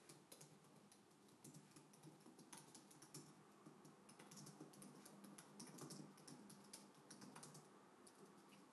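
Faint, quick typing on a computer keyboard: a dense, irregular run of key clicks over a low steady hum.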